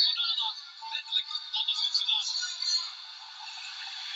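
Tinny, narrow-sounding music with a voice in it, cut off below and above so it has no bass.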